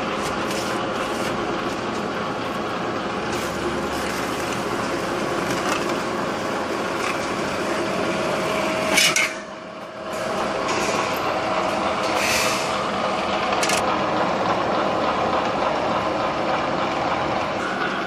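Lock forming machine running, its motor-driven forming rollers rolling galvanized sheet metal into a drive-cleat strip: a steady mechanical whir with metal rattle. About nine seconds in, a sharp metallic clank, a brief drop in level, then the machine runs on.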